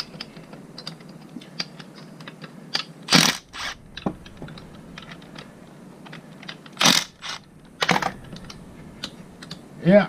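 A cordless power tool driving the forcing screw of a three-jaw bearing puller on a gearbox shaft, in several short bursts: three a little after three seconds in and two or three more around seven to eight seconds. Light metallic clicks and taps from the puller and gear parts are scattered between them.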